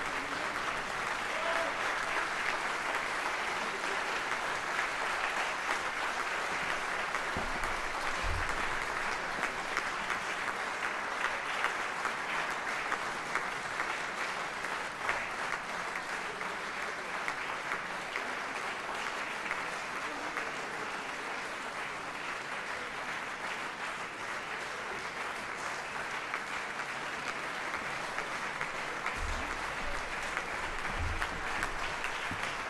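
A large audience applauding steadily: a dense, even patter of many hands clapping.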